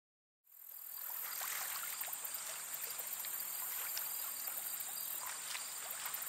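Outdoor ambience fading in about half a second in: a steady high hiss of insects, with scattered faint clicks.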